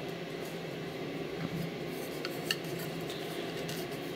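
Faint handling sounds of a replica drinking horn being worked into a leather-look holster strap: soft rubbing with a few light clicks, over a steady low room hum.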